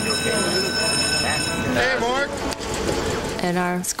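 Overlapping chatter of many voices under a held, chime-like ringing tone that stops about a second and a half in. A single voice starts talking near the end.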